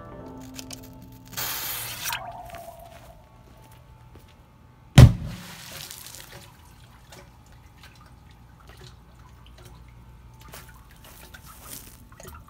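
A lit Korsarka firecracker goes off underwater in a water-filled drain: a short hiss early on, then about five seconds in one very loud bang, followed by splashing and water dripping back through the grate.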